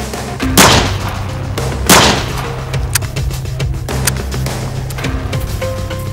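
Two pistol shots, just over a second apart, over background music with a steady bass.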